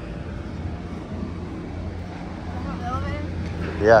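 Low, steady rumble of street traffic on the road alongside, growing a little louder toward the end.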